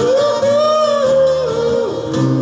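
A man singing one long held note over a twelve-string acoustic guitar; the note slides up at the start and steps down shortly before it ends.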